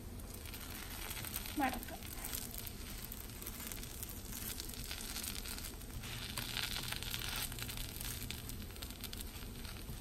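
Dosa frying in a hot nonstick pan with a light sizzle and crackle, with soft scraping and pressing of a plastic spatula as the filled dosa is folded and pressed; the sizzle is a little brighter near the end.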